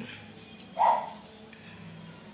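A dog barks once, a single short bark about a second in, over a faint steady hum.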